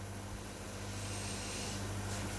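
A person sniffing at the neck of an opened bottle of pear cider, a faint, drawn-out inhale through the nose, over a steady low electrical hum.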